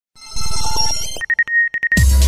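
Electronic intro sound effect: a fast pulsing buzz under high steady tones for about a second, then a single high-pitched beep that stutters on and off.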